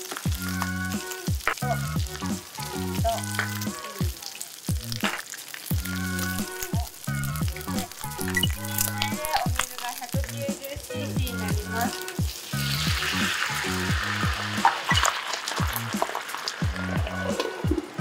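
Pork belly, rice vermicelli and vegetables sizzling in a hot frying pan. About twelve seconds in, a louder hiss lasts a few seconds as water is poured into the hot pan.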